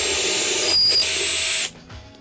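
Power drill boring a dowel hole into a wooden board through a doweling jig's guide bushing, the bit fitted with a stop collar to limit the depth. The drill runs steadily with a high motor whine, is briefly louder around the middle, and cuts off near the end.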